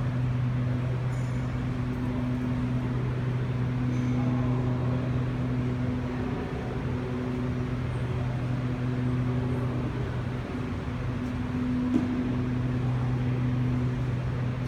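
Steady low machine hum with a second tone above it, over a hiss of room noise. The lower tone fades for a couple of seconds near the end, and there is one small click about twelve seconds in.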